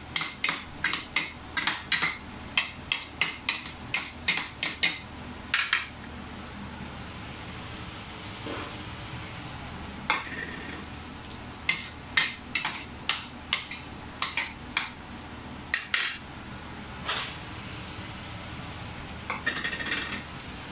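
A metal ladle knocking and scraping against a pot while stirring chopped pig face meat frying in it, over a steady sizzle. The knocks come about three a second for the first six seconds, stop for a few seconds, then start again for about six more.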